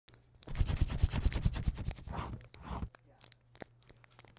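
A pencil scribbling on paper: quick scratchy strokes, dense for about two and a half seconds, then a few last scratches.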